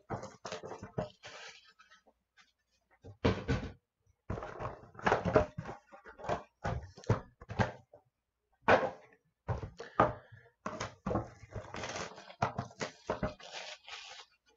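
Cardboard trading-card boxes being handled and set down on a table: irregular knocks and rustles, a few at a time, separated by short pauses.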